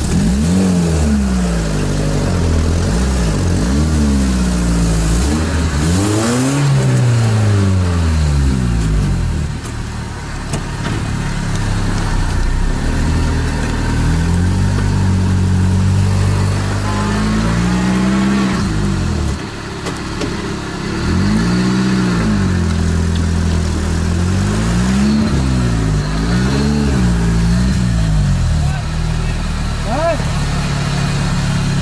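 Engine of a homemade off-road buggy heard from inside its cab, revving up and easing off again and again as it drives through deep mud, with short lulls about ten and twenty seconds in.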